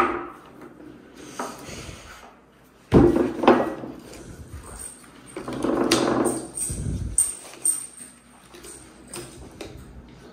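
Cardboard jigsaw puzzle pieces being handled and pressed onto a wooden tabletop: a sharp click at the start, two thumps about three seconds in, a longer stretch of rustling and shuffling around six seconds, then a few light clicks.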